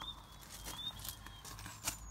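Faint handling noise from a hand-held camera being swung around inside a car: a few soft clicks and rustles, with a sharper click near the end. A faint, thin, high tone wavers slightly in pitch underneath.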